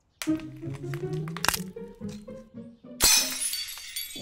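A short run of music notes, then about three seconds in a loud, sudden crash of cracking and shattering as the rock breaks open.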